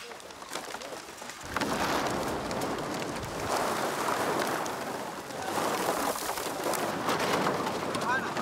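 Heaps of empty plastic bottles rattling and crunching as a sack of them is tipped onto the pile, starting about a second and a half in.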